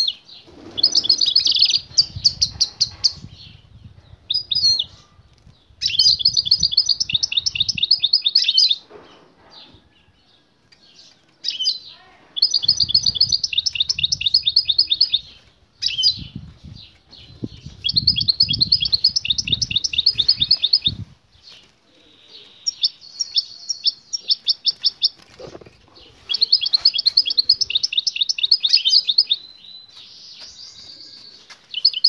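Caged European goldfinch twittering in repeated phrases of fast, pulsed trill notes, each two to three seconds long, separated by short pauses.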